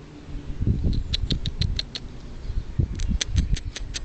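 Blue tit giving two quick runs of short, high call notes, about seven notes each a second or so long, the second starting about three seconds in. A low rumbling noise runs underneath.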